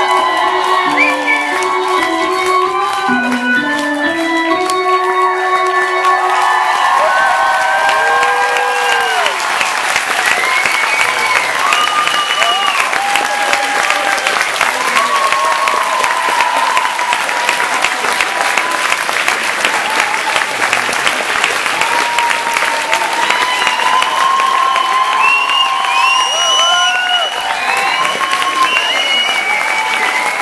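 A band's live song ends within the first few seconds. The audience then claps and cheers steadily for the rest of the time.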